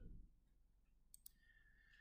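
Near silence with two faint computer mouse clicks about a second in, a fraction of a second apart.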